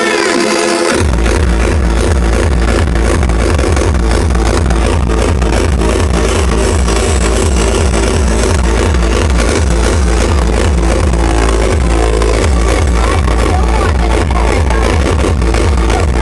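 Hardcore techno played live over a big event sound system. A heavy kick drum drops in about a second in and keeps a fast, steady beat from then on.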